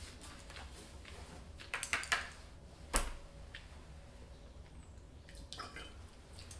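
Faint mouth sounds of a wine taster working a sip of dry white wine around the mouth, with a few short wet bursts about two seconds in. There is a single sharp click about three seconds in.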